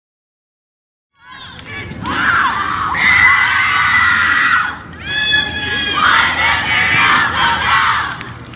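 A girls' soccer team shouting a cheer together in a huddle: many young voices, starting about a second in and running in two loud stretches with a brief dip between.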